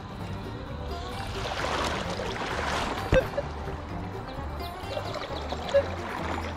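Shallow river water swishing and trickling as a metal detector coil is swept through it, swelling in the middle, with one sharp click about three seconds in.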